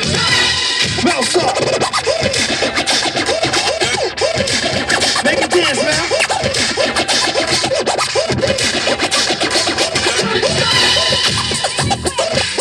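Turntable scratching: a vinyl record pushed back and forth by hand, making rapid rising and falling pitch sweeps cut into a hip-hop beat.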